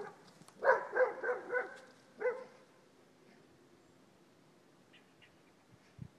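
A dog yipping: a quick run of four or five high yips about a second in, then one more a little after two seconds.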